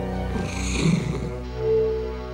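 Orchestral film score with sustained tones, joined about half a second in by a hissing noise with a low rough sound under it that lasts about a second.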